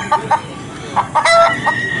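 A recorded chicken sound effect played from a small loudspeaker in an interactive farm sign: a few short clucks, then a longer drawn-out call beginning a little past halfway.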